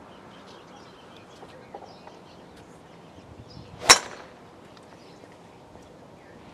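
Golf driver striking a ball off a tee: a short whoosh of the downswing and then one sharp crack about four seconds in.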